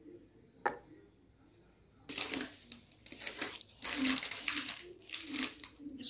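Plastic packet of champagne biscuits (ladyfingers) crinkling in irregular bursts for several seconds as biscuits are taken out, after a single sharp click just under a second in.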